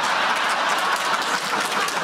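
Studio audience laughing and clapping, a dense, steady wash of noise.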